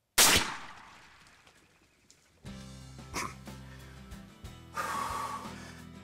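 A single loud handgun shot from a Smith & Wesson .460 revolver that rings away over about two seconds. Music with a steady low drone comes in about two and a half seconds in.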